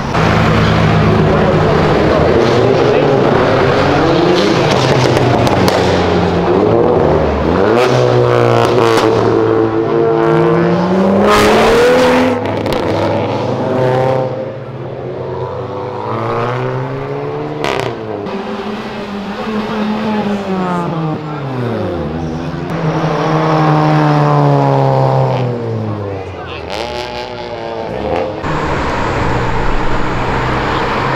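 Performance cars accelerating hard down a street, a Porsche 911 and then a Volkswagen Golf hatchback. Engine pitch climbs and drops several times as they shift up through the gears, with a few sharp cracks from the exhaust.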